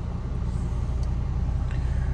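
Toyota GR Yaris's 1.6-litre turbocharged three-cylinder engine idling steadily just after a cold start, heard from inside the cabin.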